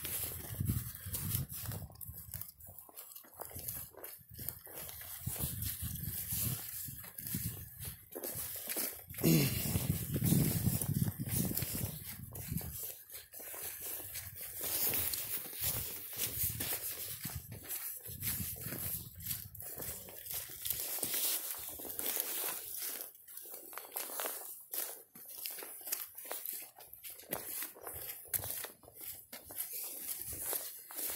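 A measuring wheel rolling and footsteps moving over grass and dry leaves, with irregular clicks and rustling. A louder, low pitched sound that rises and falls in pitch comes about nine seconds in and lasts a few seconds.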